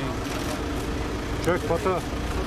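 A vehicle engine idling with a steady low hum while a few voices talk briefly over it, about one and a half seconds in.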